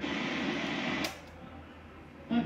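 Hiss from a Sony ST-333S tuner's output as it switches band from FM to AM, broken by a sharp click about a second in, after which only a faint low hum remains.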